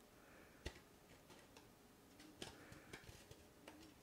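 Near silence with a few faint clicks from scored cardstock being pinched and bent into folds by hand, the clearest a little under a second in.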